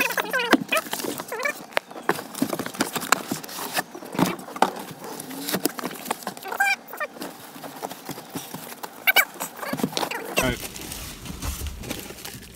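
Hands handling a cardboard box and a plastic-wrapped speaker enclosure: irregular knocks, taps and rustling of cardboard and plastic.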